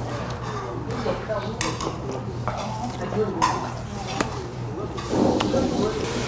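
Metal chopsticks clinking against plates and bowls, a few separate sharp clicks, over faint background chatter.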